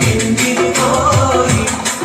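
Group singing with rhythmic hand clapping in quick, steady beats, the music of a boys' oppana dance.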